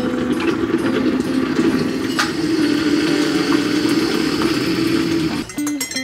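Instant hot water dispenser boiling and pouring hot water into a mug: a steady rushing hiss over a low hum. Near the end it gives way to guitar music.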